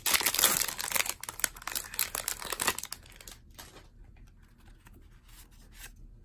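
A foil-wrapped trading card pack being torn open, its wrapper crinkling loudly for about three seconds. Then quieter rustling as the stack of cards is slid out and handled.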